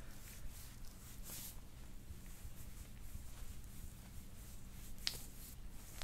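Hands kneading a bare upper back beside the shoulder blade: faint rubbing of skin with a few soft clicks, the clearest about a second and a half in and again near five seconds.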